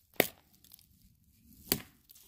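Two brief, sharp crackles about a second and a half apart, the first the louder, with little else heard between them.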